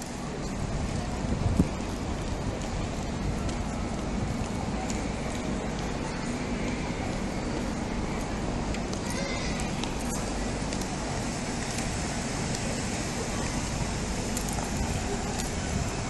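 Outdoor street ambience: a steady noise of traffic and open air, with faint distant voices and a single knock about a second and a half in.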